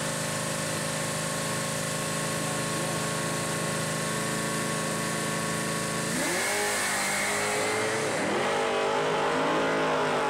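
Fox-body Ford Mustang's engine held at a steady rpm on the drag strip's starting line, then launching at full throttle about six seconds in. The pitch climbs, drops at a gear change about two seconds later, and climbs again.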